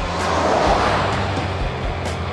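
A vehicle driving past: a swell of road and tyre noise that peaks under a second in and then slowly fades.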